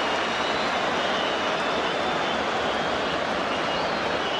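Steady crowd noise from a large football stadium crowd, with a few faint high whistles over it.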